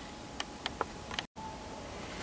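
Quiet room tone with four or five faint, sharp clicks in the first second or so, then a brief total dropout to silence just past halfway.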